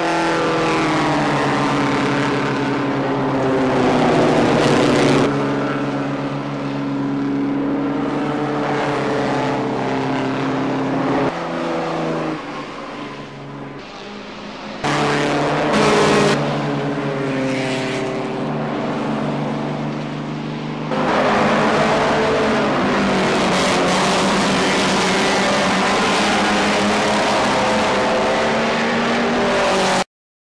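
Pre-war sports racing cars, including a 1936 Lagonda LG45, running at racing speed with engines revving, the pitch rising and falling as they accelerate past. The sound is loudest around 4 s and 16 s in, dips shortly before the 15 s mark, and cuts off abruptly at the end.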